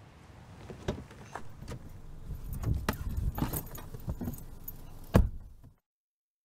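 A car door opened by its exterior pull handle with a latch click about a second in, then clattering and rustling as someone climbs into the seat. The door slams shut just past five seconds in, the loudest sound, and everything cuts off abruptly right after.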